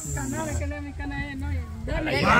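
Quiet talking among a small group of people, with a steady high-pitched hiss that cuts out about half a second in.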